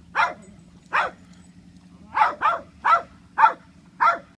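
A dog barking six times: two single barks, then a quicker run of four about half a second apart.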